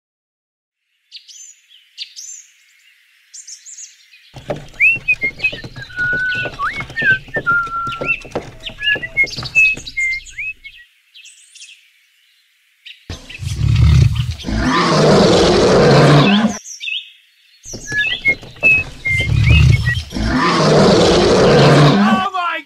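Birds chirping and whistling, in short calls that rise and fall. Later come two loud, rough stretches of about three to four seconds each, starting about thirteen and eighteen seconds in.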